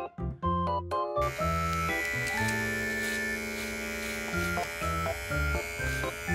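Background music with a steady electric buzz: a small battery-powered pet hair trimmer switches on about a second in and keeps running under the music.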